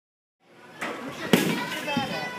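Silence at first, then two sharp knocks of a baseball striking something in a batting cage, the second louder, with voices around them.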